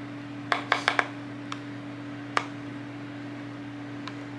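A spoon scooping guacamole from a bowl into a small plastic container, giving a handful of light clicks in the first two and a half seconds, over a steady low hum.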